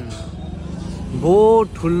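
A voice making one short, drawn-out vocal sound, rising and falling in pitch, a little over a second in, over a steady low background hum.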